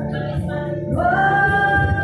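Backing music plays, and about a second in a woman's voice comes in through a microphone, singing one long held note.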